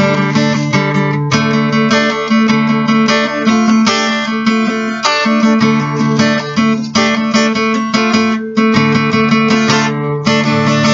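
Acoustic guitar strumming chords in a steady rhythm, the chord changing every second or two, with no singing.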